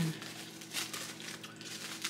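Clear plastic wrapping around a cake crinkling as it is handled and pulled open, a run of irregular crackles.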